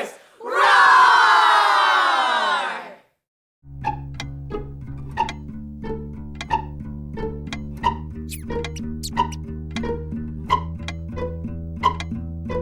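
A group of children shouting together, their pitch sliding down, then a brief silence. A children's-song instrumental intro begins about four seconds in: plucked strings over a steady tick-tock beat, about three ticks every two seconds, with a few high rising squeaks.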